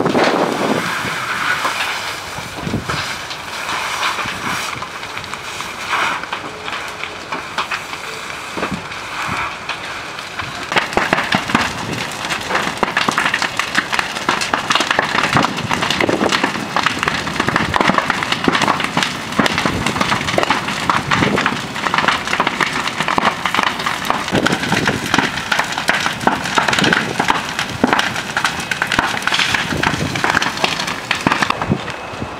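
Burning wooden garden sheds crackling and popping, with the hiss of a firefighter's hose jet playing on the flames. The crackling grows louder and denser about ten seconds in.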